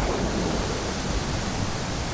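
Stormy sea sound effect: a steady, even rush of surf.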